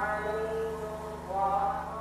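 Islamic chanting at a mosque: long held notes that bend slowly in pitch.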